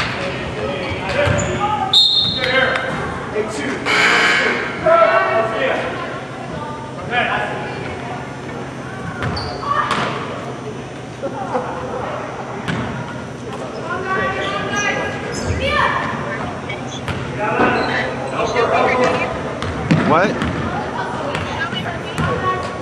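Basketball bouncing on a hardwood gym floor during a game, among voices of players and spectators calling out, echoing in the large gymnasium.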